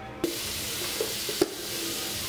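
Tap water running steadily into a sink basin, starting abruptly just after the start, with a small knock about one and a half seconds in.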